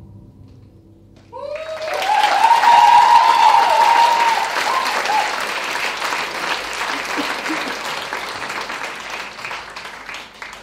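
Audience breaking into applause and cheering about a second in, with whoops and shouts over the clapping at first, then the clapping slowly dying down.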